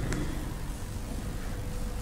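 A pause in a recorded speech: steady background hiss and room noise with no voice, until speech resumes just after.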